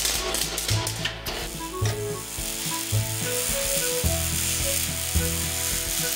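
Electric arc welding: the arc sizzles and crackles steadily. Background music with a stepping bass line and a light melody plays at the same time.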